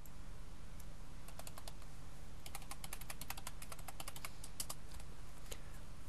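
Computer keyboard being typed on in short, irregular runs of keystrokes, busiest in the middle, over a faint low hum.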